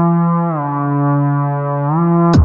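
Electronic music: a sustained synthesizer note, rich in overtones, glides down in pitch about half a second in, holds, and glides back up near the end.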